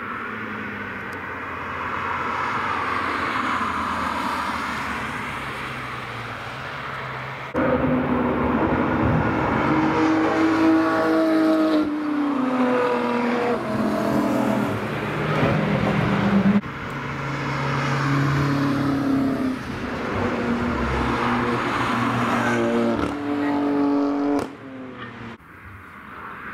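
Several cars passing one after another through a corner of a racetrack. Their engine notes rise and fall in pitch, and the sound changes abruptly several times where one pass is cut to the next.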